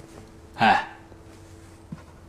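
A man's single short scoffing laugh, a little past halfway, falling in pitch.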